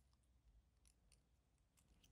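Near silence, with a few very faint clicks from the stamped stainless-steel folding clasp of a watch bracelet as it is worked by hand.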